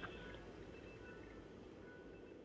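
Near silence: faint hiss and low room tone, slowly fading away.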